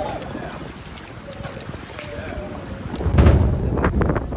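Water sloshing in an outdoor swimming pool with faint voices. About three seconds in, a loud gust of wind buffets the microphone.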